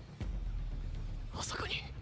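A voice whispering a short line of dialogue, hushed and breathy, about one and a half seconds in, over a low steady rumble.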